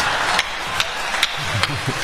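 Audience laughter dying away after a punchline, with a few scattered hand claps and a man's low chuckle near the end.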